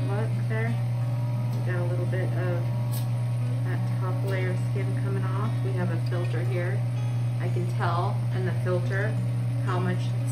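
Background music with guitar and a voice, over a steady low hum that runs without change, typical of the microdermabrasion machine's suction pump.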